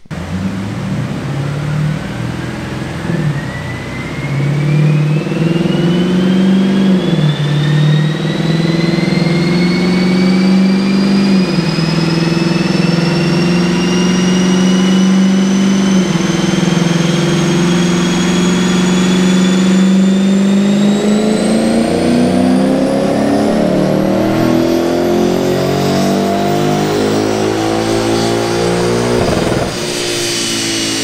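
Lexus GS F's 5.0-litre V8, heard through its JoeZ cat-back exhaust, making a wide-open-throttle pull on a chassis dyno. A thin whine climbs steadily in pitch as the rollers and tyres gain speed. The engine note holds fairly steady, then climbs steeply over the last eight seconds or so before the throttle is let off near the end.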